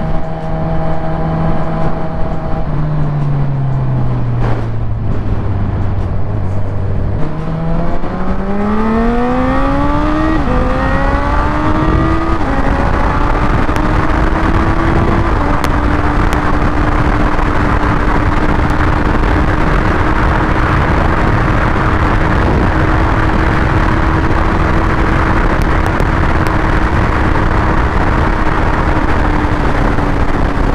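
Honda CB1000R inline-four engine heard from the rider's seat. The engine note drops as the throttle is eased, then from about seven seconds in the bike accelerates through three upshifts, the pitch rising and falling back at each shift. It then settles to a steady highway cruise, with wind rush on the microphone growing as speed builds.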